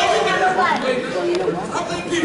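Overlapping, indistinct chatter of several people in a gymnasium.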